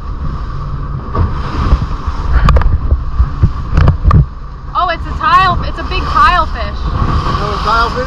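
Motorboat running at speed, with a steady engine and hull rumble and wind buffeting the microphone. A few sharp knocks come midway, and voices about five seconds in.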